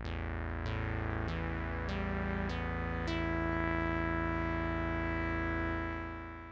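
Elektron Digitakt played as a polyphonic synthesizer, its notes struck one after another about every 0.6 s and stacking into a held chord. It is set to a voice-stealing mode that drops the highest notes once the voices run out. The chord then sustains and begins to fade near the end.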